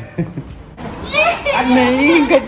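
A toddler's high voice babbling and squealing in play, starting about a second in, with an adult's voice alongside.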